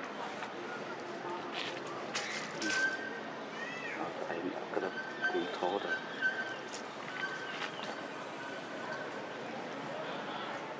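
Macaques calling with short rising squeaks and wavering coos about the middle, among rustles and clicks.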